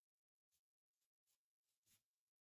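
Near silence, with a few very faint scratches of a pen writing on paper.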